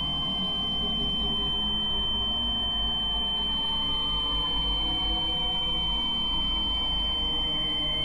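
Eerie droning soundtrack: a steady, high-pitched sine-like tone held over a low, even drone.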